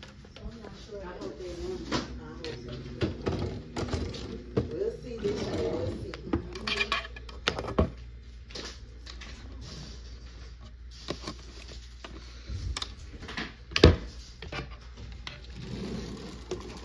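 Clinks and knocks of a metal hasp being handled on a wardrobe door, then a dresser drawer being pulled open, with one sharp knock near the end.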